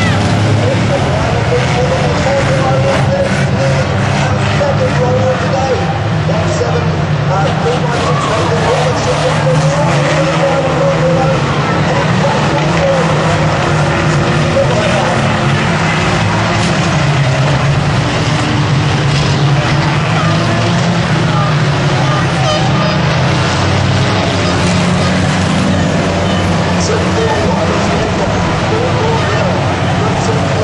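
Engines of several racing vans lapping an oval track, a continuous drone of mixed engine noise, with indistinct voices over it.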